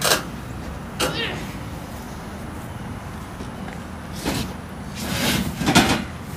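Lengths of pipe knocking and scraping against each other and the cardboard box as they are handled, in several separate clatters, the longest near the end. A steady low hum runs underneath.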